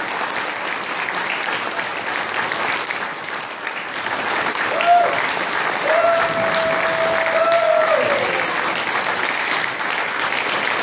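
Audience applauding steadily. About five seconds in, one long held high note from someone in the crowd rises above the clapping for some three seconds, then drops away.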